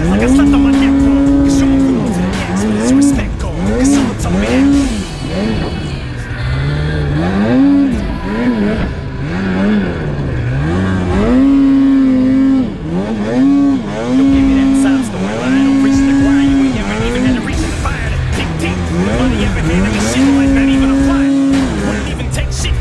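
Polaris snowmobile engine revving up and down again and again as the throttle is worked in deep snow. On the longer pulls the pitch climbs quickly and then holds steady at a high pitch for a second or more: around the first two seconds, several times in the middle, and near the end.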